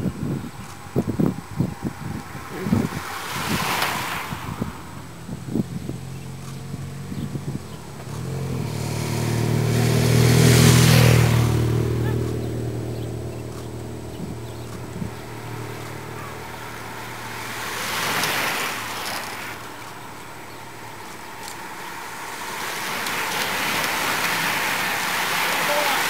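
A motor vehicle passing on the wet road: its engine and tyre hiss swell to a peak and fade away. Near the end, a steadily building hiss of many bicycle tyres on wet tarmac as a bunch of racing cyclists closes in.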